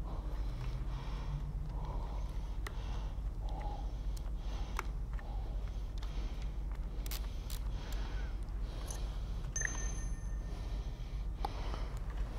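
Scattered light metallic clicks and taps as small bolts are turned by hand into a Ford 7.3 Godzilla cam phaser clamped in a vise, over a steady low hum and a person's breathing.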